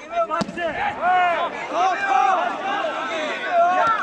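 Open-air shouting from players and spectators at a football match, loud and continuous from about a second in. A sharp thud about half a second in is a football being kicked, and a second short knock comes near the end.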